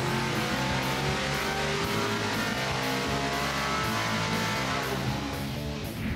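A 400-horsepower V8 street engine running hard on an engine dynamometer, loud and steady, easing a little near the end. Rock music with electric guitar plays over it.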